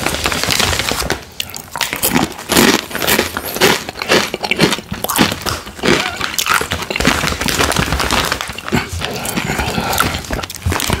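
Shiny plastic Takis chip bag crinkling as it is handled and turned over, a loud, dense run of crackles.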